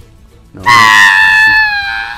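A long, loud, high-pitched scream of Heihei, the cartoon rooster, panicking at being surrounded by water. It starts about half a second in and sags slightly in pitch as it goes on.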